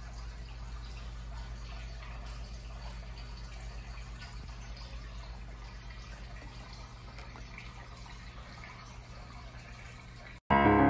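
Aquarium water trickling and dripping faintly over a steady low hum.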